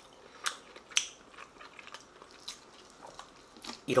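Close-up eating sounds of a person biting into and chewing slow-roasted pork shoulder meat off the bone. There are two sharp mouth clicks about half a second and a second in, then faint chewing ticks.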